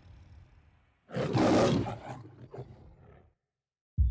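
The MGM logo's lion roar: a few low growls, then one loud roar about a second in, trailing off into quieter growls.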